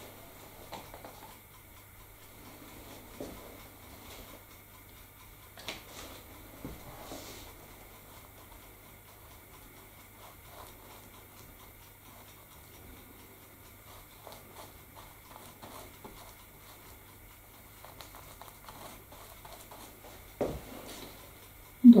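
Faint scratching and dabbing of a paintbrush spreading white glue over a painted scenery base, with scattered small taps and clicks. A single sharp thump comes near the end.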